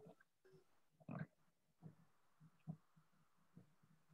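Near silence on an online call: low room tone with a few faint short noises, the clearest about a second in.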